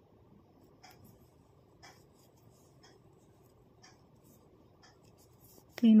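Faint tapping and rubbing of knitting needles working yarn, with a few light clicks about a second apart.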